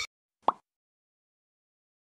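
A single short plop sound effect about half a second in, otherwise dead silence.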